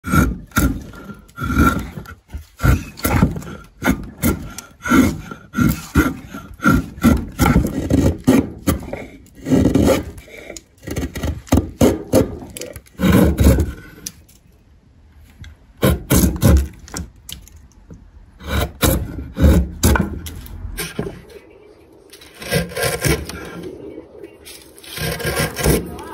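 Hand-held steel chisel paring shavings off the edges of a wooden box: repeated short scraping strokes, a stroke or two a second, with a brief lull about halfway through.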